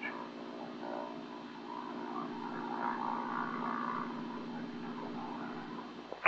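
Piston engine of a single-engine light airplane running steadily in flight, an even low hum. A faint, muffled voice sits underneath it in the middle.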